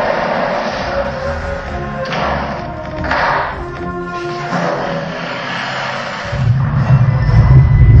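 A film-clip montage soundtrack: music with movie sound effects. Near the end, a loud low rumble sets in and carries on for about two seconds, the sound of a giant rolling boulder.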